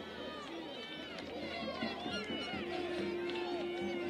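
Several voices shouting and talking over one another on a football pitch, with spectators' voices close by. A steady held tone joins in partway through and runs on.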